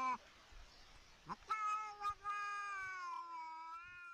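A cat yowling in long, drawn-out cries: one fades out just after the start, a short rising cry comes about a second and a half in, then another long, slowly falling yowl runs on to the end.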